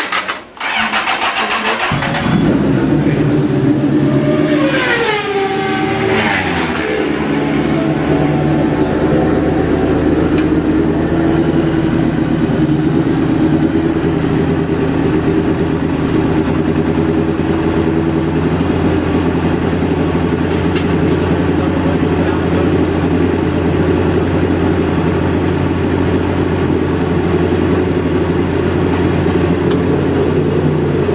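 Honda CBR1000RR superbike's inline-four race engine firing up about two seconds in, with a falling whine over the next few seconds. It then settles into a steady, even idle as it warms up.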